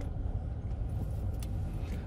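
Steady low rumble of tyre and engine noise heard inside a vehicle cruising along a concrete road.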